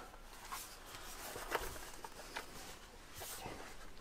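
A few faint clicks and taps from handling an old aluminium laptop, over quiet room tone.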